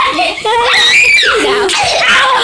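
Girls screaming in fright during a scare prank, with high rising shrieks about a second in and overlapping shouting.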